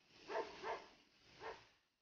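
A dog barking faintly: two quick barks in the first second and a third about a second later.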